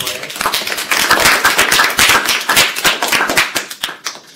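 Audience applauding: many hands clapping together, thinning out near the end.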